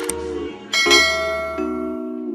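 Intro music: held chords over a low bass tone, with a bright bell-like chime struck about three quarters of a second in and left ringing.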